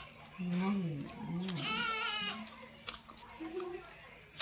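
A goat bleating: one wavering call about a second and a half in.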